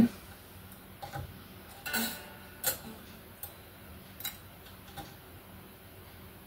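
Small metallic clicks and taps of a hex key working the saddle height screws of a guitar's tremolo bridge, about six irregular ticks, the strongest about two and three seconds in.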